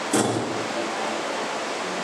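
Steady hiss of room noise, with a short thump near the start.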